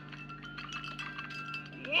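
Faint, light chiming tones, a few high notes held and changing in pitch with small clicks among them, over a steady low hum.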